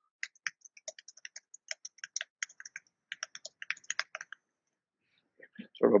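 Typing on a computer keyboard: a quick run of keystrokes lasting about four seconds, then it stops.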